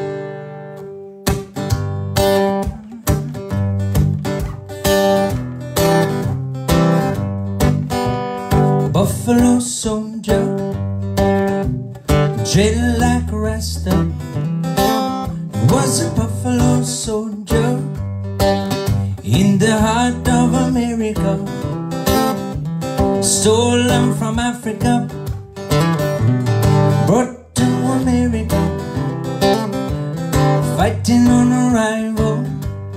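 Acoustic guitar strummed in a steady rhythm, starting about a second in, with a man singing along over it in the second half.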